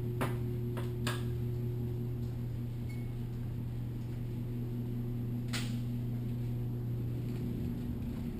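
A steady low hum, with a few light clicks near the start and another about five and a half seconds in.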